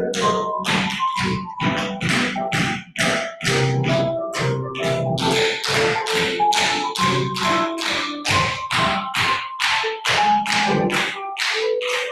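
Tap shoes striking a hard studio floor in a steady rhythm of about three taps a second, over background music.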